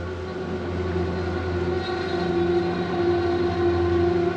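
Dinghy outboard motor running steadily under way, a continuous pitched drone that grows slightly louder over the first couple of seconds and then holds.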